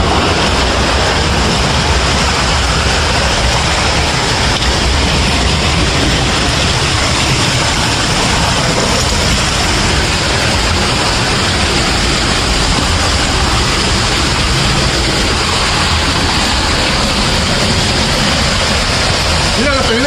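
Steady, loud rush of flowing water echoing in a cave passage, like a nearby underground stream or waterfall. A man gives a short shout at the very end.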